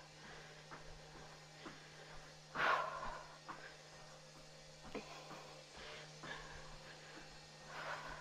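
Mostly quiet room with a faint steady hum, broken by one breath out from a woman resting between exercises about two and a half seconds in, and a few faint ticks later on.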